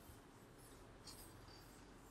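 Near silence: room tone, with a few faint scratching strokes of writing.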